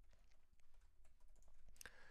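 Faint typing on a computer keyboard: a handful of soft keystrokes, with one louder key press just before the end.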